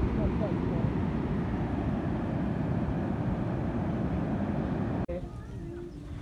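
Steady rumbling outdoor noise of wind and surf at a beach, cutting off suddenly about five seconds in.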